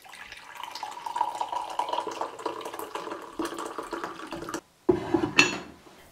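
Liquid poured in a steady stream from a floral porcelain teapot into a ceramic mug, splashing for about four and a half seconds. After a short break there is a brief louder sound near the end.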